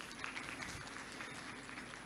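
Faint clapping from an audience, a few claps a second, dying away about halfway through.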